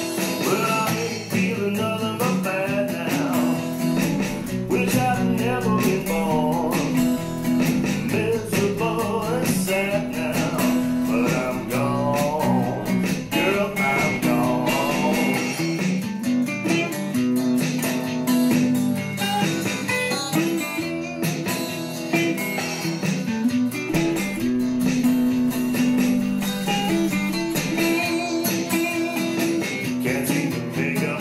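Instrumental break of a blues-tinged song, with a guitar lead playing bent, sliding notes over steady guitar accompaniment.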